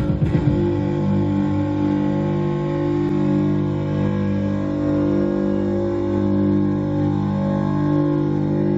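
Live band music from bass guitar and synthesizer: the rhythmic beat drops out about half a second in, leaving a steady, sustained droning chord.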